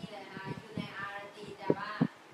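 A woman's or child's high voice speaking Thai in the sing-song run of a tonal language.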